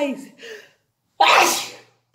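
A woman sneezes once: a single sharp, noisy burst about a second in, with a fading voiced intake just before it.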